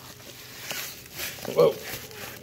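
Padded paper bubble mailers rustling and scraping softly as one is grabbed and slid out of a stack.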